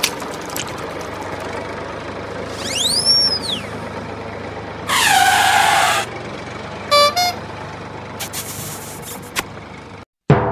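Steady truck-engine sound effect running under a hand-pushed plastic toy tractor and trolley. About three seconds in, a whistle rises and falls; a horn blast of about a second follows near the middle, then a brief run of beeps and a few clicks.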